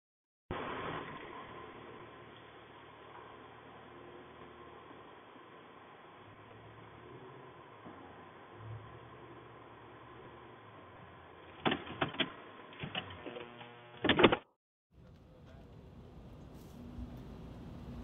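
Faint steady background noise, then a few sharp clicks about twelve seconds in and a loud short clatter just after fourteen seconds that cuts off abruptly.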